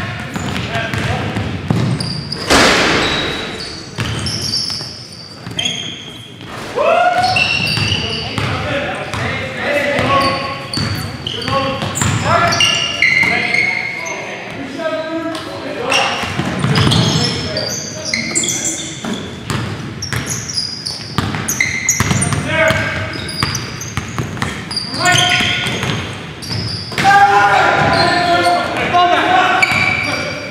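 Game sound from an indoor basketball court: a basketball bouncing on the hardwood floor in short sharp knocks among indistinct players' voices, in the echo of a large gym.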